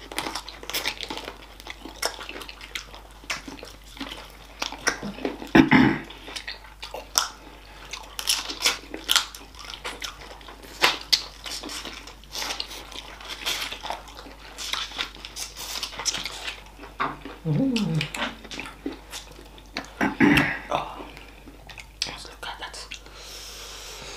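Close-miked mouth sounds of people eating chicken feet with their fingers: wet sucking, lip-smacking and chewing, full of short clicks. A few brief hummed sounds come in around six seconds in and again near the end.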